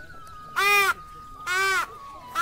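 A child blowing a plastic toy horn: two short honks about a second apart, each rising and falling slightly in pitch.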